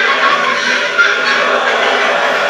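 Rock music with electric guitar from a film soundtrack, loud and steady.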